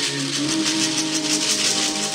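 Shekere (beaded gourd rattle) shaken in a steady rhythm, with a long held sung note beneath it.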